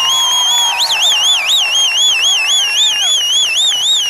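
A loud, shrill whistle from the crowd, held steady for about a second and then warbling up and down about three times a second.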